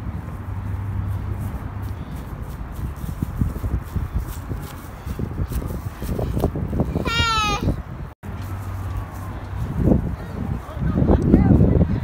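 A small child's voice: a high, wavering squeal about seven seconds in, and more voice sounds near the end, over a steady low outdoor rumble.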